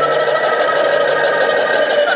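Live ensemble music, several instruments holding sustained notes together.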